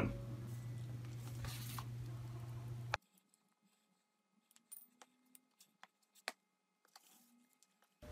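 Faint steady low hum of room tone for about three seconds, then it cuts off abruptly to near silence broken by a few faint clicks, the clearest about six seconds in.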